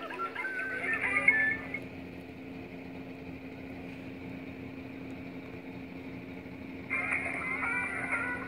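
Tinny end-credits music and logo jingles from the small speakers of a phone and a tablet. The music stops after about two seconds, leaving a steady low hum, and starts again louder about a second before the end.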